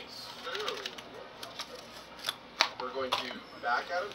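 A handful of short, sharp clicks and taps from small plastic vegetable cups being handled and emptied while their juice is drained, with some low muttering.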